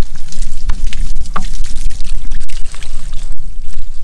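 Water poured from a bucket, splashing and running over a freshly sawn eastern red cedar slab and washing the sawdust off, with a steady low rumble underneath.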